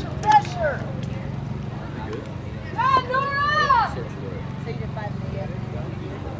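High-pitched voices shouting: the last syllable of a quick chant about half a second in, then one long, rising-and-falling call about three seconds in, over a steady low hum.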